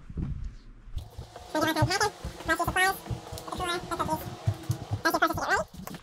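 High-pitched voice sounds with no clear words, over a run of soft knocks from a handheld phone being moved about.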